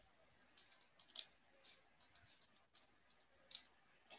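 Faint typing on a computer keyboard: about a dozen quick, light key clicks, irregularly spaced, with the loudest near the middle and near the end.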